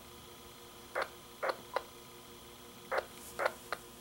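Icom IC-R20 communications receiver running a band-scope sweep. Its speaker gives short bursts of radio noise in groups of three, the groups about two seconds apart, over a faint steady hum.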